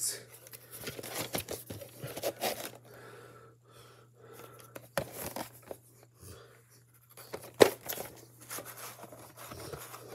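A plastic VHS clamshell case being handled and turned over: irregular rustling and scraping, with a sharp click about five seconds in and a louder plastic click about seven and a half seconds in.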